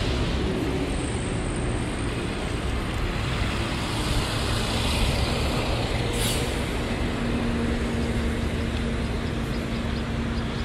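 Road traffic on a city street: a steady rumble of passing cars and buses. About six seconds in there is a brief hiss, and from the middle on a low engine hum holds steady.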